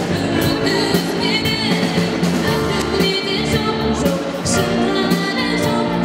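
Live pop-rock band playing: a woman singing lead over electric guitars, keyboard and a drum kit, with a steady beat.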